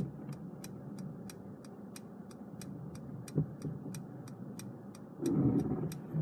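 Mercedes-Benz E-Class turn-signal indicator ticking evenly, about three ticks a second, over a low cabin hum as Active Parking Assist steers the car out of the space on its own. A louder low sound comes in near the end.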